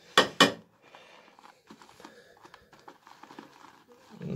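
Two loud short knocks in the first half-second, then a shaving brush whipping soap lather in a bowl: a faint, irregular wet crackling.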